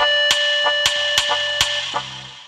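Closing bars of a Microsoft Office clip-art MIDI tune played back by a software synthesizer: a held chord over a bass pattern, with regular percussion strokes about three a second and a final stroke near the end as the piece finishes.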